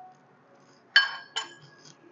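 A metal spoon clinks twice against a bowl, two sharp ringing taps about half a second apart, as powdered sugar is spooned out.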